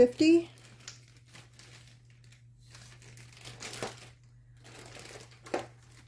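Plastic zip-top bag crinkling and rustling in scattered, faint bursts as it is pressed shut and handled.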